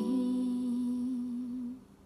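A woman humming one long, slightly wavering final note while a fingerpicked ukulele chord rings out under it. Both fade and stop shortly before the end.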